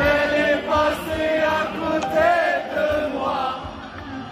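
Live raï concert music: a male voice singing a wavering, ornamented melody over the band, with many crowd voices singing along.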